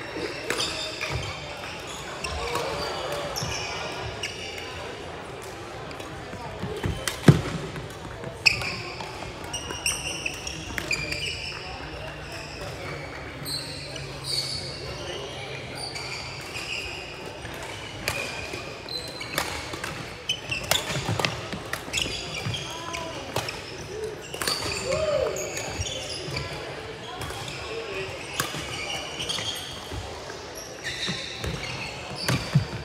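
Badminton play in a large, echoing indoor hall: scattered sharp racket hits on shuttlecocks and short squeaks of court shoes on the floor, the loudest hit about seven seconds in. Voices chatter underneath.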